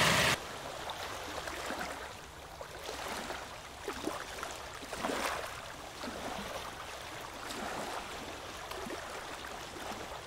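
Water lapping and sloshing gently with a few small splashes around a person standing chest-deep in it. A brief burst of wind noise on the microphone cuts off right at the start.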